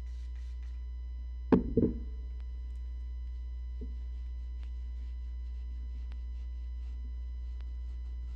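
Cloth rubbing faintly along a fabric bag strap as it is wiped clean, over a steady low electrical hum. A double thump from handling on the table about a second and a half in, and a lighter one a little later.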